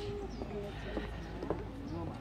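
Footsteps and the small wheels of a mobility scooter knocking unevenly on wooden deck boards, with faint voices behind.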